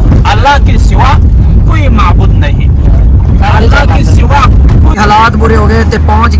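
Men talking over a steady low rumble of a car's engine and road noise, heard inside the cabin. The rumble changes character near the end, about five seconds in.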